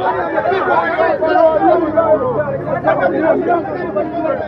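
Several men talking loudly over one another, a dense babble of overlapping voices with no clear words.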